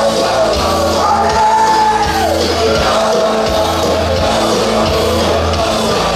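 Live rock band playing at full volume: electric guitars, bass and drums under a male lead vocal, with a long held high note that slides down about two seconds in.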